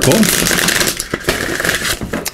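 A deck of Earth Magic Oracle cards riffle-shuffled by hand: a rapid run of card flicks as the two halves fall together in the first second, then softer rustling as the deck is pushed together and squared.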